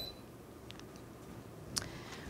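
A few light clicks over quiet room tone, the sharpest about three-quarters of the way through.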